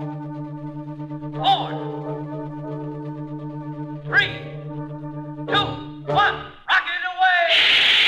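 Rocket-blast sound effect on a 1950 children's 78 rpm record. A steady low droning chord runs under swooping pitch glides every second or two. A few falling glides follow, and about seven and a half seconds in a loud, steady rush of noise takes over as the rocket blasts off.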